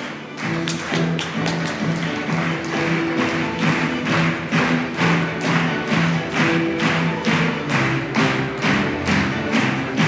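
Music with a steady beat of about two beats a second over held low notes, starting about half a second in.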